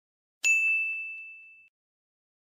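A single bell-like ding sound effect, struck about half a second in and ringing out, fading over about a second.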